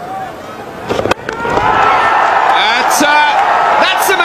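A cricket bat strikes the ball with a sharp crack about a second in, and the stadium crowd then cheers loudly and steadily as the big hit goes out of the ground.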